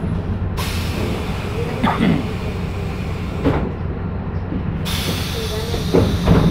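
Cabin noise inside a moving public-transit vehicle: a steady low running rumble with a hiss that swells about half a second in, drops away after three seconds and comes back near the end, and faint voices in the background.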